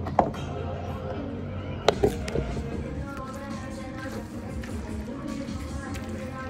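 Two sharp knocks about two seconds in, over faint background music.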